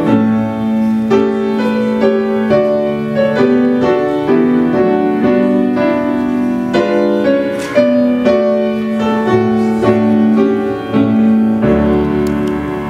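Grand piano playing music, with chords changing about once a second.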